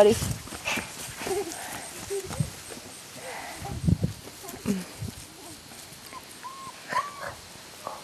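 German shepherd puppies giving a few short, faint yips near the end, over scattered rustles and soft thuds in the grass.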